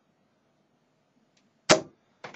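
A 24-gram tungsten dart striking the dartboard once, a single sharp hit near the end.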